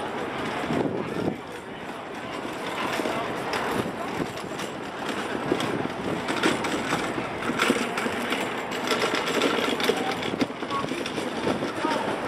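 Indistinct chatter of people talking nearby over a busy, steady outdoor background noise, with some rattling running through it.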